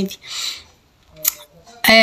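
A woman speaking pauses: a short breath, then a faint click, and her speech starts again near the end.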